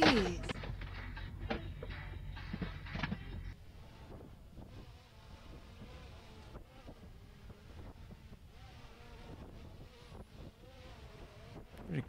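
A car driving on a road: a low, steady rumble of engine and road noise that cuts off about three and a half seconds in. After that there is only a faint, wavering hum.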